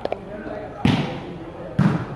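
A volleyball struck hard by hand twice, about a second apart: the serve, then the ball hit back from the other side, over spectators' chatter.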